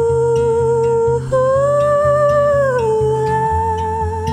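A woman singing a long wordless note with vibrato over acoustic guitar. The note steps up about a second in and slides back down near three seconds.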